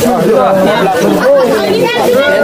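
Several voices speaking over one another.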